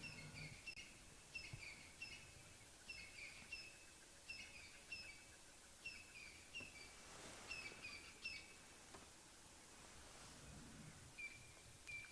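Faint bird calls: a short two-part chirp repeated over and over, about once or twice a second. The chirping stops about nine seconds in and starts again near the end.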